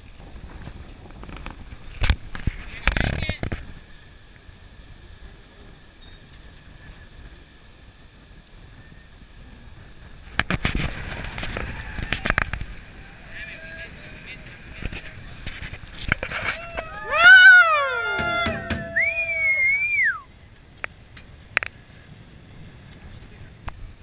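Wind and water rushing past a 12 Metre sailing yacht under way, with knocks and clatters of deck gear. A loud shouted call slides down in pitch about three-quarters of the way through.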